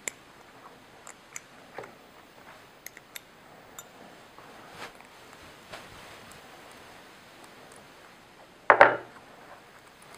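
Sparse small metallic clicks and ticks as an open-end wrench and fingers work a lock nut loose on a bow release head. Near the end comes a louder, short clatter as the steel wrench is set down on the table.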